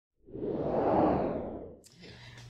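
Whoosh sound effect for an animated title: a rush of noise that swells for about a second and then fades away.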